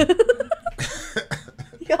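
A man and a woman laughing in short, breathy bursts, a quick run of them at first, then a few more spaced out.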